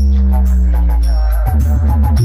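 Electronic dance music played at high volume through a large DJ speaker-box rig, dominated by heavy sustained bass notes over a downward-sliding tone, with a fast stuttering bass passage about one and a half seconds in.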